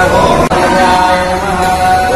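Devotional chanting, voices holding long, steady notes with only slight changes in pitch. The sound breaks off for a moment about half a second in, then goes on.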